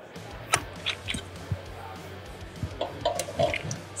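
Scattered light clicks and knocks from hands working the tire changer's metal parts, over a faint hall background.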